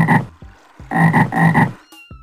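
Frog croaks played as a sound effect: one short croak at the start, then a quick run of croaks about a second in.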